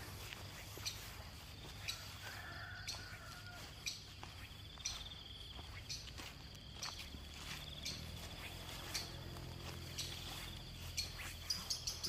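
Insects trilling steadily at a high pitch in the early-morning countryside, with faint bird calls. Light sharp ticks come about once a second through the trilling.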